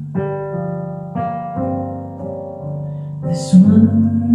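Piano sound from an electric keyboard playing slow, sustained chords, struck about three times in the first two seconds and left to ring. A woman's sung phrase comes in loudly over the chords near the end.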